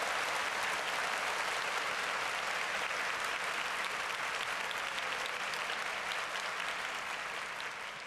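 Live stand-up comedy audience applauding, with dense, steady clapping that eases off slightly toward the end.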